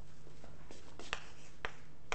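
Chalk writing on a blackboard: a handful of sharp taps and light scratches of the chalk against the board, over a steady low room hum.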